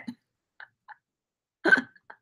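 A woman's single short catch of laughter, a brief giggle near the end, after a moment of near quiet.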